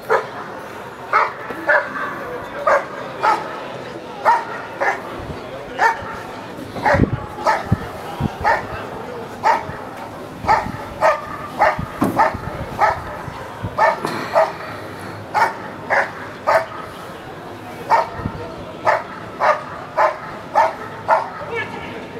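German Shepherd Dog barking steadily at a motionless helper in a padded bite sleeve, about two barks a second with a few short gaps. This is the hold-and-bark of an IPO protection exercise, where the dog guards the helper and barks without biting.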